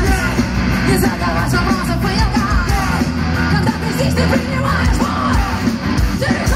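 Live rock band playing loud, with drums and electric guitars, and a female lead singer singing and shouting over them.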